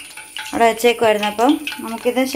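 A woman's voice speaking, with hot oil in a frying pan sizzling faintly underneath, heard alone for about the first half second.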